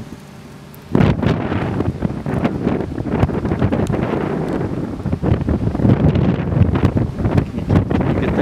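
Wind buffeting the camera microphone in loud, irregular gusts with a heavy low rumble, starting suddenly about a second in.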